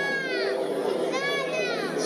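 Piano song performed live: piano chords sustained under a high, wordless voice that glides up and down twice in long arching phrases.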